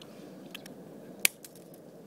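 A rock brought down on a black walnut on a concrete curb: one sharp crack a little over a second in, with a couple of faint clicks before it, as the nut's shell breaks.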